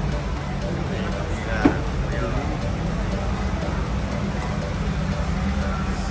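Busy event background of distant music and people talking over a steady low hum, with a brief rising sound about two seconds in.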